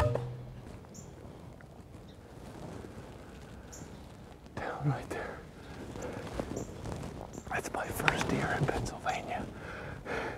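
A man whispering and breathing hard in excitement, starting about four and a half seconds in, just after a crossbow shot. A sharp crack dies away in the first moment, and the woods are quiet before the whispering begins.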